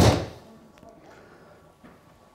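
A 7-iron striking a golf ball off a hitting mat: one sharp crack right at the start that dies away within half a second. It is a well-struck, compressed shot, with the club travelling down and the low point ahead of the ball.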